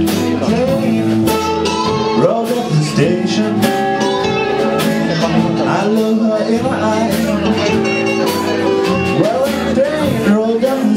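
Two acoustic guitars playing a slow blues instrumental passage live, with long held melody notes over the plucked chords.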